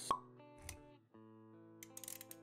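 A single sharp, bubbly pop sound effect right at the start, over soft sustained background music, with a softer thud-like hit about half a second later.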